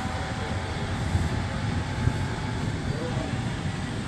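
Distant thunder, a steady low rumble rolling on without a break.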